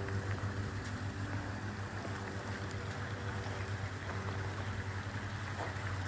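A motor running steadily: an even low hum over a constant rushing noise.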